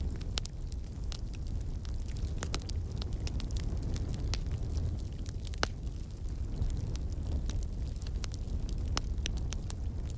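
A steady low rumble with irregular crackles and pops scattered over it.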